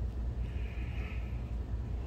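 Digital Projection dVision 30 XL DLP projector's electronics powering up: a steady low hum, with a faint high whine from about half a second in to just past one second.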